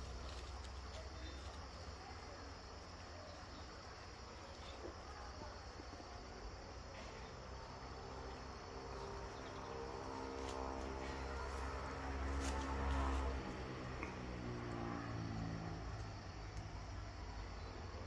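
Insects buzzing and chirring in riverside woodland, faint and steady, with a low rumble on the microphone that is strongest about two-thirds in.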